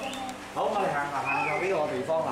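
Women's voices talking and chattering, a high-pitched voice rising and falling partway through, over a steady low hum.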